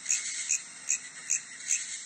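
Cricket-like insect chirping, laid in as a sound effect: short, high chirps repeating evenly about two and a half times a second over a faint steady hiss.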